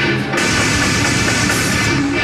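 Heavy metal band playing live: distorted electric guitar with drums, loud and dense. The sound gets brighter and fuller about a third of a second in.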